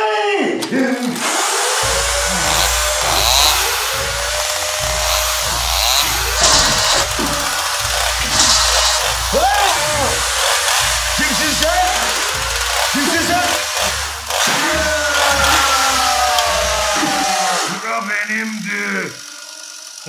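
Frightened screaming and yelling that breaks out suddenly over a loud, harsh, continuous noise with a pulsing low beat underneath. The noise drops away near the end.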